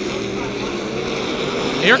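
Modified race cars running at racing speed around a short oval, a steady drone of several engines with slowly shifting pitch. A man's voice starts right at the end.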